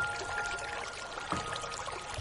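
Piano music: a few sustained notes ringing and fading, with a new note struck about a second and a half in, over a steady hiss of rain.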